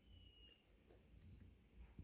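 Near silence: faint room tone, with a faint brief high tone in the first half second and a faint tick at the very end.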